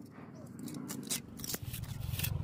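A small steel trowel scraping and tapping on wet cement plaster in several short strokes, over a low steady hum.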